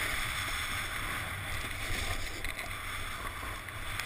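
Wind buffeting the camera's microphone as the rider moves downhill at speed, a steady low rumble, with the hiss of snow sliding under the rider on a groomed ski run.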